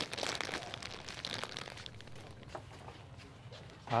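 Clear plastic flower wrapping crinkling and rustling close to the microphone, with many small crackles that are busiest in the first second or two and then thin out to quieter rustles.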